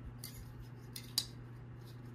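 Light clicks and taps of clear hard-plastic stackable display cases being handled and fitted together, the sharpest click a little past a second in, over a steady low hum.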